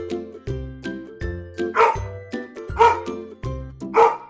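A dog barking three times, about a second apart, the barks louder than the background music with a steady beat that runs underneath.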